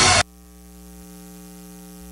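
Pop dance music cuts off abruptly just after the start, leaving a steady electrical mains hum made of several even, unchanging tones.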